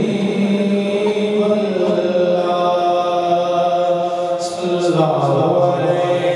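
A man singing a devotional naat solo, without instruments, into a handheld microphone, in long held melismatic notes. The melody shifts to a new phrase about five seconds in.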